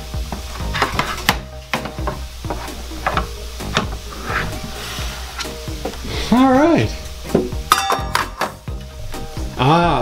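Irregular plastic clicks, knocks and scraping as the plastic bowl of a WOPET automatic pet feeder is handled and slotted into the feeder's base, with a quick run of clicks near the end.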